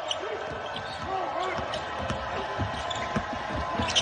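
A basketball bouncing on a hardwood court during live play, with scattered short thuds and faint voices calling out in a largely empty arena.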